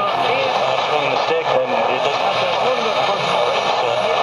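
A Sony TFM-1000W transistor radio's loudspeaker playing a talk station on the AM band, a voice coming through steady static and hiss.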